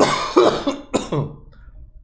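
A man coughing: two loud coughs, the first right at the start and a second about a second in.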